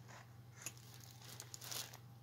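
Faint rustle of a paper card being handled, with a light tap about a third of the way in, over a low steady hum.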